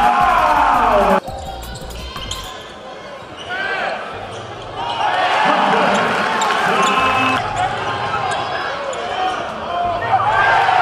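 Game sound from a basketball gym: crowd noise, with sneakers squeaking on the hardwood and a ball bouncing as players run the court. A louder stretch cuts off abruptly about a second in.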